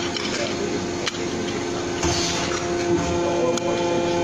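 Metal cutting press running with a steady hum, with sharp metallic clicks about a second in and again after three and a half seconds, over a background of voices.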